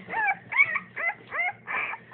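A three-day-old Bernese Mountain Dog puppy whimpering while being weighed: a quick run of short, high, squeaky cries, about three a second, each bending up and down in pitch.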